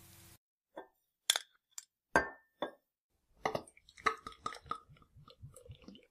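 Glass beer bottles clinking as they are handled: a few separate clinks, one ringing briefly, then a quicker run of small clinks and knocks in the second half.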